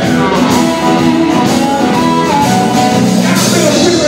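Live electric blues band playing a steady groove: electric guitars, bass and drums, with a held, bending amplified harmonica lead.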